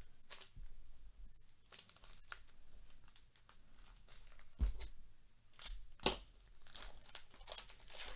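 Foil wrapper of a trading-card pack being torn open and crinkled by hand, a run of irregular rips and crackles with two sharper ones about halfway through and a second and a half later.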